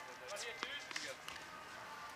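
A tennis ball bouncing a few times on a hard court, faint, with distant voices behind it.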